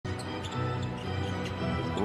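A basketball being dribbled on a hardwood court, repeated bounces over steady background music.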